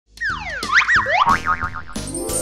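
Cartoon sound effects over the start of a bright music intro: a quick series of whistle-like pitch glides, first falling, then swooping up and down, ending in a fast wobbling warble, as the title pops onto the screen.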